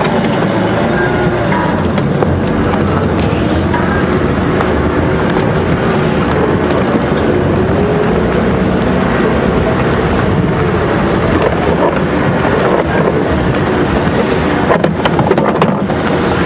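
Open safari game-drive vehicle's engine running as it drives along a dirt track, its pitch wavering up and down over a steady rushing noise.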